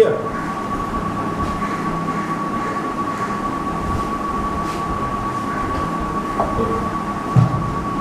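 Steady room background noise with a constant thin high whine, and a single low thump near the end.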